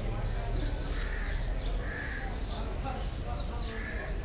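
Cattle-market din: distant chatter of people with crows cawing a few times, over a steady low rumble.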